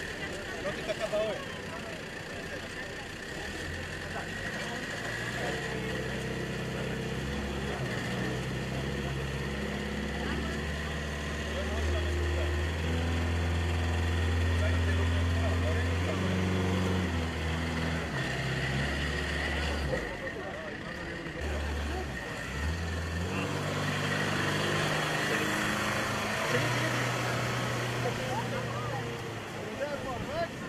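Engine of an off-road jeep carrying a mobile water filtration unit, running and speeding up as it drives. It is loudest about halfway through, eases off around two-thirds of the way in, then picks up again.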